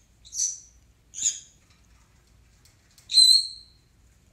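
A caged pet bird calling: two short, high chirps in the first second and a half, then a louder, clearer whistled call about three seconds in.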